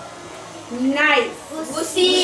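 Speech only: a voice saying a word about a second in and another word starting near the end, as in a classroom vocabulary drill.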